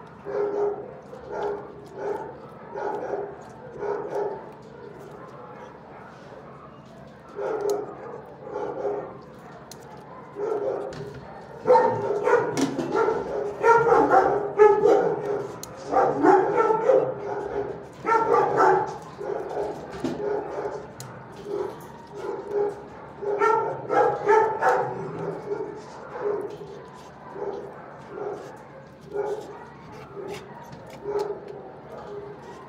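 Dogs barking in a shelter kennel, in clusters of short barks with pauses between, the busiest and loudest stretch about halfway through.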